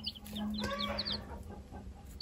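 Baby chicks peeping in a brooder: a quick run of short, high cheeps in the first second or so, then fainter. The brood is a mix of Amberlink, Wyandotte and ISA Brown chicks.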